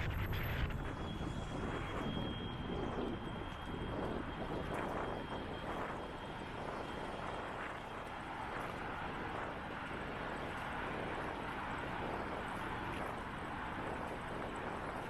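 Road traffic heard from a moving bicycle: car engines and tyres on the road alongside, with wind on the microphone, louder at the start and easing off. A thin, high, steady whine runs through the first half.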